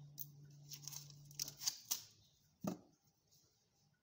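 Paper wrapper of a block of butter being torn and peeled open, a quick series of crackly rips over the first couple of seconds. A single knock follows near three seconds in.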